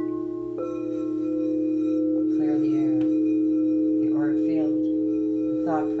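Singing bowl ringing with a steady, sustained tone, played as a sound healing. About half a second in, a fresh stroke brings in higher overtones, and the tone then holds evenly.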